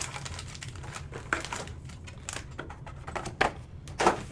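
Hands handling foil-wrapped trading-card packs and their cardboard box on a table: a run of light clicks, taps and crinkles, a few sharper, over a steady low hum.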